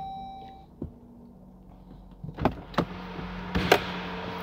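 A dashboard chime fades out, followed by a click. About two and a half seconds in, the 2024 Jeep Grand Cherokee's 3.6-litre Pentastar V6 is cranked and catches, then settles into a steady idle hum.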